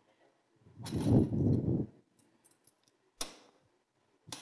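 Folding work table being opened out: a second-long stretch of its frame shifting and scraping, then a single sharp click about three seconds in as a part locks into place.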